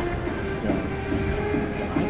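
Music played over a ballpark's public-address loudspeakers.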